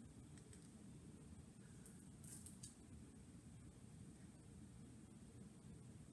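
Near silence: room tone with a low hum, and a few faint, brief scratches of writing on paper about two seconds in.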